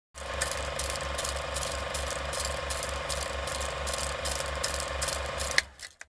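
A rapid mechanical clicking rattle, like a ratchet or gear train, at about four clicks a second. It starts suddenly and runs evenly, then stops with a sharp click about five and a half seconds in.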